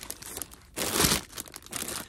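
Clear plastic bags crinkling as the bagged shoes in a cardboard box are pushed and shifted by hand. The loudest rustle comes about a second in.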